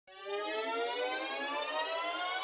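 A buzzy synthesizer tone with many overtones fades in and slowly rises in pitch: the build-up at the start of a music track.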